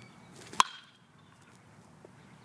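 A baseball bat hitting a tossed ball in batting practice: one sharp, loud crack with a short ring, just after half a second in.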